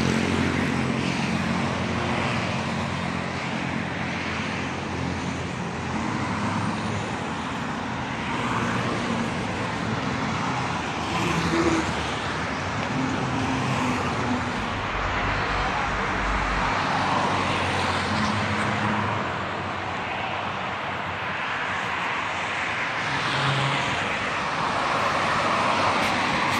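Road traffic from passing cars: a steady wash of tyre and engine noise.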